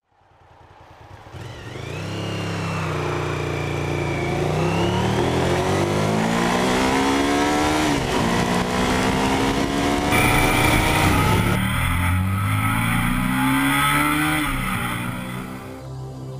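Suzuki SV1000N's 996 cc V-twin accelerating hard through the gears. The engine note fades in, climbs steadily in pitch, and drops at each upshift, about eight seconds in and again near the end.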